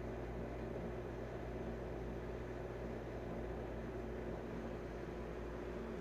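Steady low hum with a faint hiss and no changes: room tone, with no brush strokes audible.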